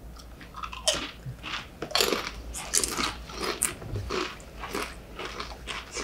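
Tortilla chips being bitten and chewed by several people, irregular crisp crunches coming one after another.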